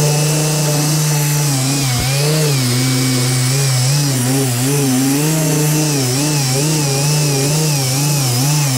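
Bauer dual-action polisher with a foam compound pad running on a car's trunk lid, compounding faded clear coat; its motor hum is loud and steady, wavering up and down in pitch throughout.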